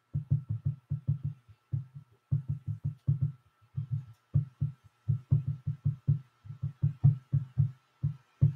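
A rapid, uneven run of short low thuds, several a second, with a faint steady high-pitched tone underneath.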